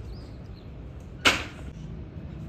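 A short, sharp whoosh about a second and a quarter in, over faint steady background noise.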